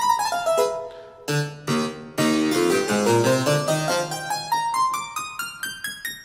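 Sampled harpsichord, the 'Harpsichord Triple Unison' patch of IK Multimedia's Philharmonik 2, with a full, chorus-like sound from its stacked unison choirs. A short falling phrase and a couple of chords over low bass notes, then a run of single notes climbing steadily toward the top of the keyboard.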